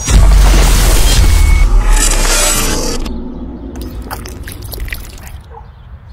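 Advertisement soundtrack: music with a loud rushing sound effect and deep boom right at the start, strongest for about three seconds, then fading.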